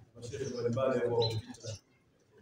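A man speaking into a handheld microphone.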